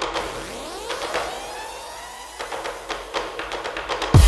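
Electronic intro music: swooping sweep effects rise in pitch, with a few scattered sharp ticks, in a build-up section without a beat.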